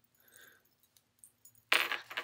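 Faint clicks and light taps from a smartphone in a hard case being handled in the hand. Near the end a sudden, much louder noise as speech begins.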